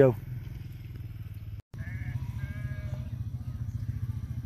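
Sheep bleating faintly in the distance, several calls in the second half, over a steady low hum.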